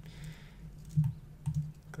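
A few keystrokes on a computer keyboard, three sharp clicks in the second half, over a faint steady low hum.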